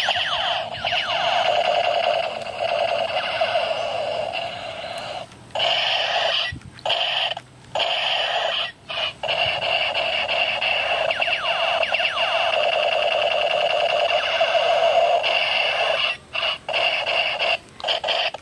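Battery-powered light-and-sound toy sniper rifle playing its electronic shooting sound effect through a small speaker: a harsh, buzzing siren-like tone with repeated sweeping glides. It plays in long runs, with several short breaks where it stops and starts again.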